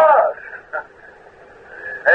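A man's voice finishes a drawn-out word in the first half second, followed by a pause of steady hiss on a muffled, narrow-sounding old sermon recording.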